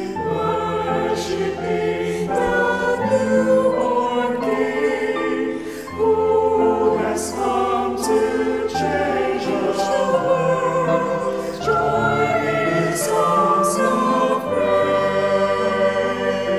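Mixed choir of men's and women's voices singing a Christmas worship song in harmony, with the lines "Worshipping the newborn King", "Who has come to change the world" and "Join in songs of praise".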